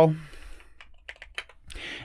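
Computer keyboard keys being typed: a few short, separate keystrokes about a second in, entering a search word into a text box.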